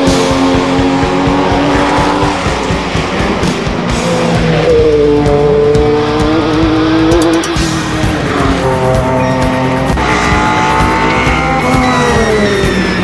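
Race car engines at full throttle as cars pass one after another, each engine note climbing and then falling away, with the clearest drop in pitch near the end.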